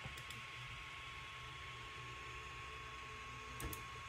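Ender 3 3D printer auto-homing: its stepper motors drive the bed and print head to their home positions, heard faintly over the steady running of the printer's fans, with a few small clicks just after the start and again about three and a half seconds in.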